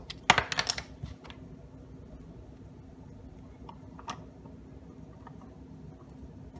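Hard 3D-printed PLA plastic pieces clicking and knocking together as a tile is handled and fitted onto a puzzle box. A quick flurry of light clicks comes in the first second, then a single click about four seconds in.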